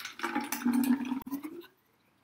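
Thick banana smoothie pouring from a blender jug into a wide-mouth bottle, a steady gushing flow that stops near the end.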